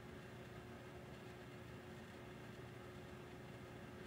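Near silence: faint room tone, a steady low hiss with a faint constant hum.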